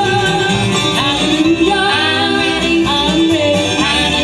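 Live bluegrass band playing a gospel song: banjo and mandolin picking over upright bass, with women singing the lead and harmony.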